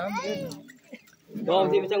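A short high-pitched call that rises and falls in pitch, then a louder voice in the last half second.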